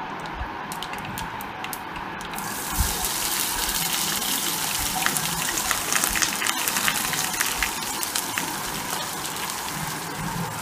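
Seeds popping in hot oil in a wok with sparse sharp crackles. About two and a half seconds in, a sudden loud sizzle as chopped onion goes into the oil, which keeps hissing and crackling as it is stirred.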